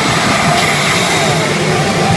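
Pachinko machine playing loud, steady rushing sound effects, dense and noisy with no clear tune.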